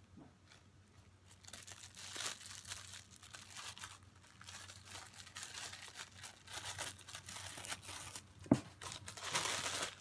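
Thin plastic packaging crinkling and rustling as it is handled, starting about a second in and going on in uneven crackles. A single sharp tap about eight and a half seconds in.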